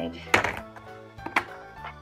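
Two sharp plastic knocks about a second apart as a plastic Play-Doh Tonka toy garbage truck is handled and set down on the tabletop, over steady background music.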